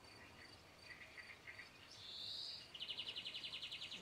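Faint songbird chirps, with a short smooth high note about two seconds in, followed by a rapid high trill for the last second or so.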